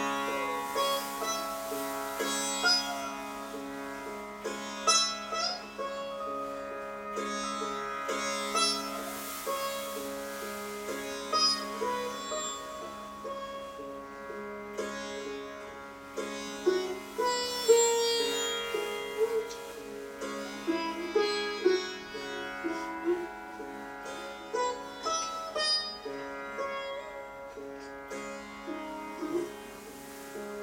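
Sitar played in a slow, free melody: sharp plucked notes, some bent upward or downward in sliding glides, over a steady low drone.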